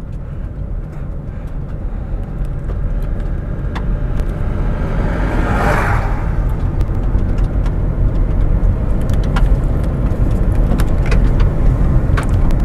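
Inside the cabin of a moving Toyota Aygo: its 1.0-litre three-cylinder engine running under road and tyre noise, growing steadily louder as the car gathers speed. A brief whoosh passes about five to six seconds in.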